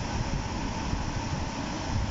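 Steady background noise with a low rumble and an even hiss, with nothing sudden in it.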